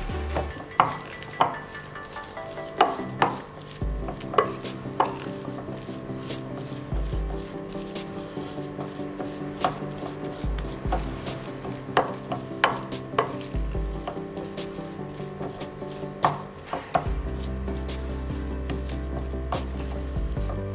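A utensil working thick mashed-potato paste in a glass bowl: soft stirring and squelching, broken by irregular sharp clinks and taps of the utensil against the glass, about a dozen over the stretch, with a quieter spell in the middle.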